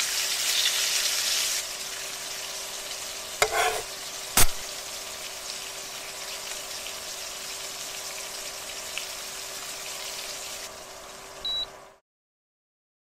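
Food sizzling in a frying pan, louder for the first second and a half, then steady until it fades and cuts off at the end. About three and a half seconds in there is a ringing clatter, and a second later a sharp knock, as the patty is turned in the pan.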